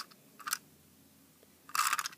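Hands handling a hard plastic toy freight truck: a brief click about half a second in, then a short scraping rattle of plastic near the end, as the truck is tried and found not to open.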